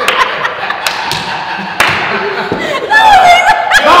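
Women laughing hard, breaking into loud, high-pitched shrieks of laughter about three seconds in, with several sharp hand claps in the first two seconds.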